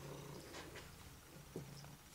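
Domestic cat purring faintly, the purr fading out after the first half-second and returning near the end, with a light tap about one and a half seconds in.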